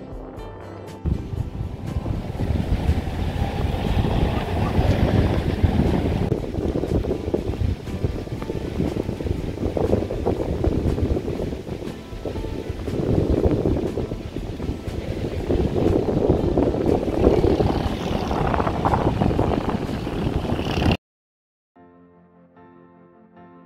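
Wind buffeting an outdoor microphone: a loud rushing noise, strongest low down, that swells and falls in gusts. It starts about a second in and cuts off suddenly near the end, and background music is heard briefly at the very start.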